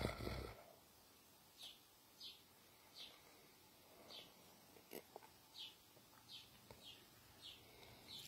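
House sparrows chirping faintly: a series of short single chirps, about one every second or less.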